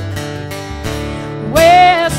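Acoustic guitar strumming. About one and a half seconds in, a woman's singing voice comes in on a loud held note.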